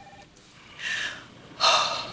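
A woman breathing out in two breaths, a soft one about a second in and a louder sigh near the end.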